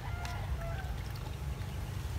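Outdoor field ambience: a steady low rumble, with a few short, faint bird calls in the first second.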